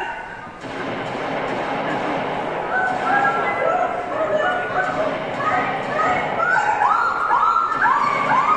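A woman's repeated short yelps and squeals, each rising in pitch and then levelling off, coming faster and louder toward the end and played over the hall's speakers, with a steady noisy background underneath.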